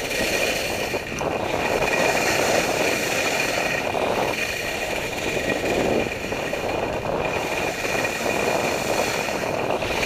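Snowboard edges carving through soft snow, with wind rushing over the microphone; the hiss swells and fades with each turn.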